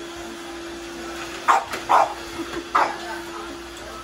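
A dog barking three short times, close together, over a steady hum.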